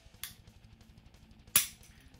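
A single sharp click from a Shadow Systems DR920 9mm pistol about one and a half seconds in, with a faint click shortly after the start: the pistol's trigger breaking on an empty gun, a dry-fire click while aimed.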